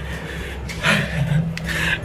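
A cloth rubbing over dirty window glass as it is washed, in two short wiping strokes, about a second in and near the end.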